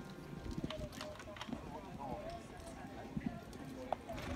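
A pony's hooves cantering on sand arena footing: scattered soft thuds, with one sharper knock near the end. Faint voices talk in the background.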